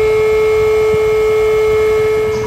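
Battery-powered electric air pump running while inflating an inflatable boat: a steady, even hum that starts abruptly just before this point and holds at one pitch.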